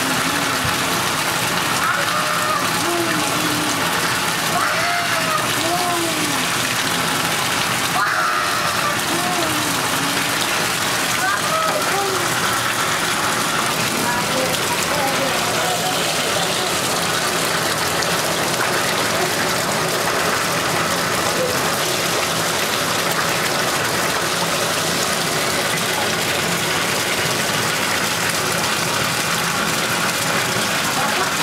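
Water running steadily into a bathtub, a constant rush at an even level throughout. Faint voices sound over it in roughly the first half.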